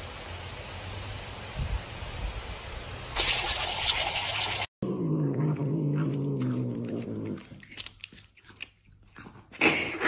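A lawn sprinkler hissing steadily, its spray louder and brighter for the second before a cut. Then a cat growling low and wavering for about two seconds while gnawing a piece of food, guarding it, followed by faint small clicks.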